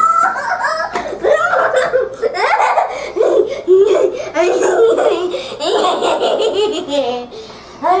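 A young girl laughing hard in repeated fits of giggles, the giddy laughter of an overtired child.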